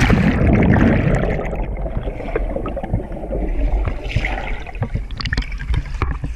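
Swimming-pool water heard by a submerged action camera: a loud rush of water as it goes under, then muffled underwater bubbling and gurgling, with splashing as it comes back up near the end.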